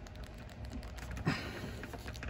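Faint clicks and rubbing of fingers working a plastic action figure's shoulder joint, trying to pop the arm out of its socket, with a brief louder noise about two-thirds of the way through.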